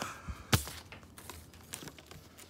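Handling noise from hands working close to the microphone: one sharp click about half a second in, then a few faint ticks and light rustling.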